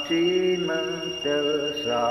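A man singing a hymn solo and unaccompanied, holding long level notes that step from pitch to pitch. A steady high thin tone runs underneath.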